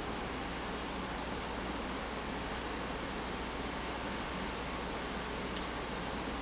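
Steady room tone: an even hiss over a faint low hum, with no distinct sounds except a faint tick near the end.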